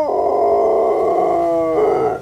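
A dog 'singing': one long, held howl at a fairly steady pitch that fades out right at the end. It is the dog's trained response of howling along to a person's singing.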